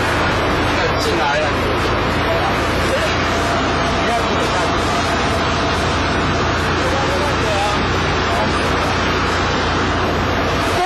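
Steady outdoor street noise: a vehicle running with a constant low hum, mixed with indistinct voices of people nearby.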